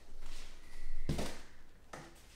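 Handling noise from a fishing rod being taken off a rack: a soft rustle, then a single knock about a second in.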